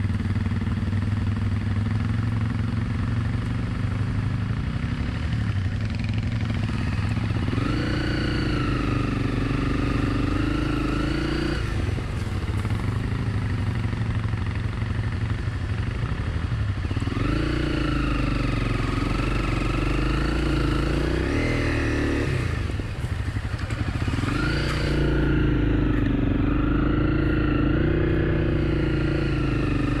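Honda CRF250 Rally's single-cylinder engine working through deep sand, its revs rising and falling as the throttle is worked, with three spells of higher revs.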